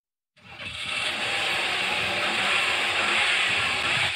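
Car engines revving, fading in after a short silence and then running at an even level.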